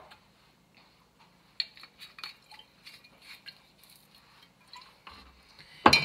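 Bottles being handled on a kitchen counter: a scatter of small clinks and knocks, then a louder knock just before the end as a bottle is set down.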